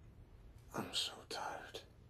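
A man whispering a short phrase, quiet and lasting about a second, starting a little under a second in.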